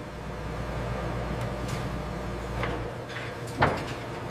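Steady low machine hum, then a short sliding whoosh about three and a half seconds in.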